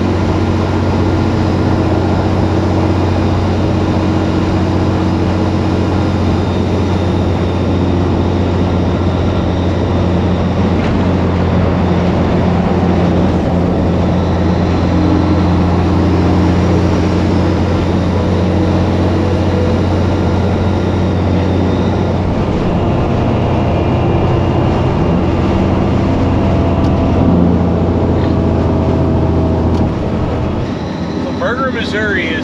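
Semi truck's heavy diesel engine running steadily at highway cruising speed, with road and wind noise. The engine note shifts a little about two-thirds of the way through.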